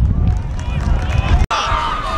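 People shouting over a heavy low rumble of outdoor game audio, with a sudden brief dropout about one and a half seconds in; higher shouted calls come through after it.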